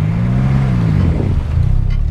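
Car engine running with a low, steady hum, its pitch rising and then falling once over the first second or so as a car drives past.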